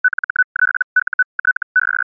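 Morse code sent as one steady tone of about 1500 hertz, keyed in quick runs of short dots and longer dashes with brief gaps between characters.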